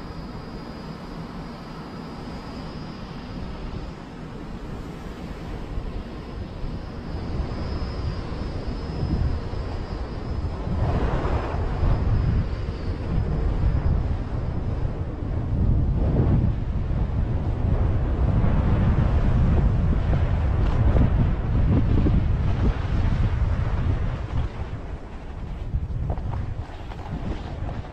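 Wind rushing over the camera microphone of a downhill skier, with the skis running on groomed snow. It grows louder as the skier picks up speed and is loudest in the second half, easing slightly near the end.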